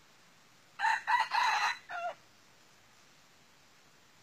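Red junglefowl rooster crowing once, about a second in: a crow of just over a second in several pitched parts that ends in a short, lower, falling note.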